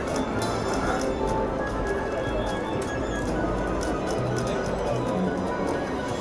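Siberian Storm slot machine spinning its reels, its spin sounds and game music playing over a steady casino din.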